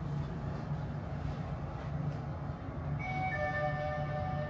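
Hyundai SSVF5 machine-room-less traction elevator car travelling down with a steady low hum. About three seconds in, its electronic arrival chime sounds two descending notes as the car reaches the floor.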